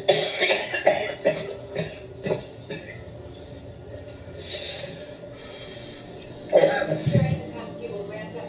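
A woman coughing from inhaling smoke, in a loud burst at the start and again about six and a half seconds in, with quieter breathing between.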